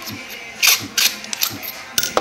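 A run of sharp clicks and clinks from a precision screwdriver and its metal bits and bit holder being handled. The clicks start about half a second in and last about a second.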